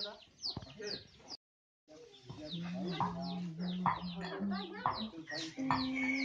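Chickens clucking and giving many quick, high, falling chirps, over short rustles of rice straw being turned. The sound cuts out for about half a second near a second and a half in.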